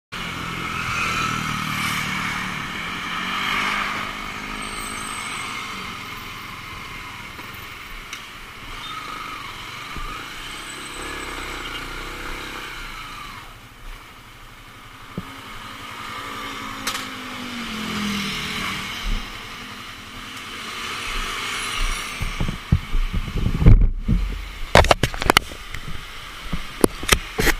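Motor scooter engine running as it rides and then manoeuvres, its pitch rising and falling with the throttle several times. Near the end, a string of sharp knocks and clicks as the scooter is parked.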